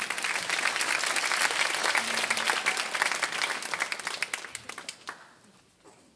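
Audience applauding, a dense patter of many hands clapping that dies away about five seconds in.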